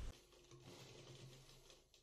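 Near silence with faint rustling and light ticks from about half a second in, fading out shortly before the end: cloth being handled while it is cut.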